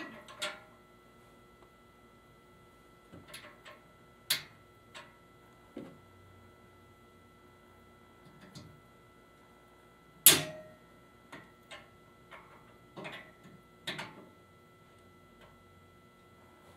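Scattered clicks and knocks of small hard parts being fitted: quick corners set onto the air grate panel's positioning posts and quick nuts pushed down onto them with a hand tool. The loudest is a single sharp click about ten seconds in.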